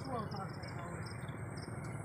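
An insect chirping in short, high, regular pulses, about three a second, with men's voices faint in the background.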